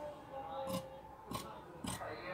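Scissors cutting cotton fabric: three crisp snips, about half a second apart.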